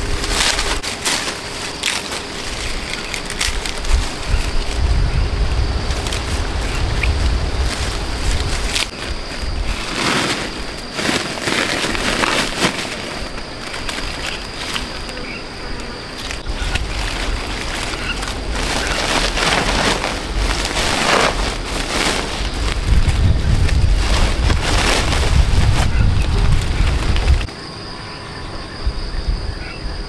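Leafy longan branches rustling in bursts as fruit clusters are handled and picked off by hand, with gusts of wind buffeting the microphone until they stop abruptly near the end.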